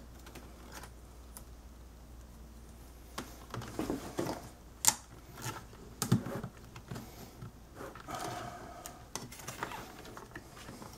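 Scattered plastic clicks and taps of a 2.5-inch SSD in a rubber sleeve being pushed into its connector in a laptop drive bay and of its flat ribbon cable being handled, with two sharper clicks in the middle.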